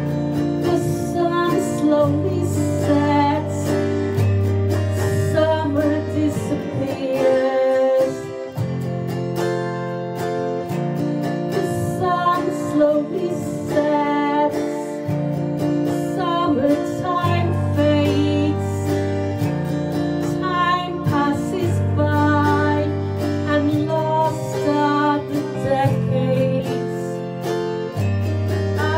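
Autoharp strummed in full chords that change about every two seconds, with a woman singing a melody over it.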